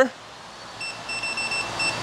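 Electric unicycle's power alarm beeping: a high-pitched beep starting about a second in, broken into several quick pulses. It warns that the motor is drawing near its power limit and that the rider should back off before a cutoff.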